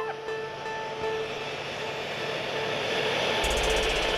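Steady jet aircraft noise that builds gradually under a single held note of background music, with a low rumble coming in near the end.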